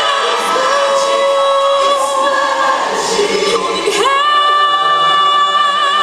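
A female soloist singing long notes with vibrato, with a choir behind her. About four seconds in, her voice slides up into a new held note.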